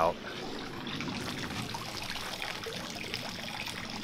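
Waterfall filter's outflow trickling steadily into a pool pond. The flow is only a trickle because the filter needs cleaning and the pump is clogged.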